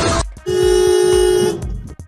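A car horn sounds one steady, loud honk lasting about a second, after music cuts off.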